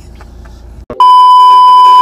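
Edited-in test-tone bleep: a loud, steady 1 kHz beep that starts about halfway through and holds for about a second over a colour-bar test card. It comes in over faint car-cabin hum.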